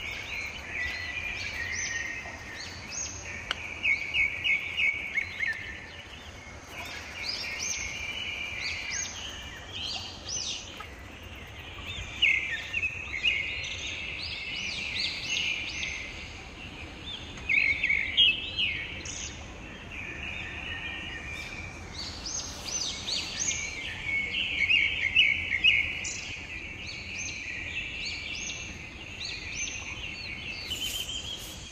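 Birds chirping and singing throughout: many short high calls and trills, a few of them coming as louder quick runs of chirps, over a faint steady background hum.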